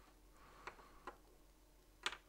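Near silence: room tone with two faint, sharp clicks, about two-thirds of a second and just over a second in.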